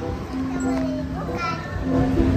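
Young children's voices with background music holding a steady low note.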